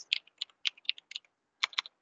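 Typing on a computer keyboard: a quick, irregular run of key clicks, a short pause, then two more keystrokes near the end.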